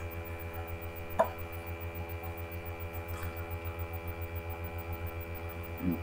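Steady electrical mains hum, with a single light knock about a second in and a fainter tick a couple of seconds later.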